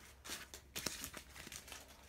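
Foil Pokémon booster pack wrapper being torn open and crinkled, a faint run of irregular small crackles.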